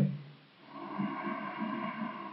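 A man's long, soft, audible breath, starting about half a second in and running on for about two seconds.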